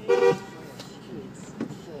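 A car horn sounds one short toot, about a third of a second, heard from inside the car's cabin. It is a prompt to a car ahead that has not moved off at a green light.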